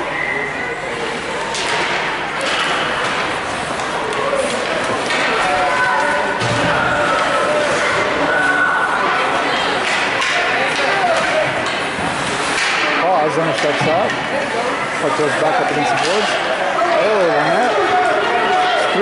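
Ice hockey game sounds in a rink: sticks and puck clacking, and thuds against the boards, over a bed of people's voices that grow louder near the end.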